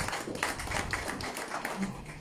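Scattered light clapping from a few people, a quick irregular run of hand claps that thins out toward the end.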